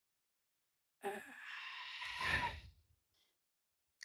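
A person sighing: about a second in, a short voiced start runs into a long breathy exhale that swells slightly and stops just before three seconds.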